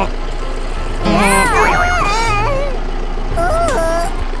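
High-pitched, sped-up cartoon voices squealing and babbling in swooping rising and falling glides, about a second in and again near the end, over background music and a steady low hum.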